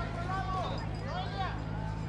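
Faint distant voices calling out over a steady low hum.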